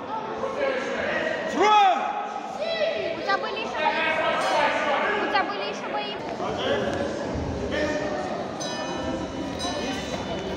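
Voices shouting indistinctly across a large gym hall, with one loud call about two seconds in.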